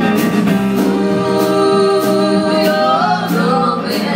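Live rock band playing a song: electric guitars, bass and drums with cymbal hits, under a sung vocal line that holds long notes.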